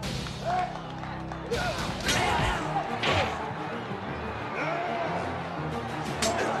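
Background music with a crowd shouting and yelling. From about a second and a half in there are several sharp hits, like punches landing in a fight.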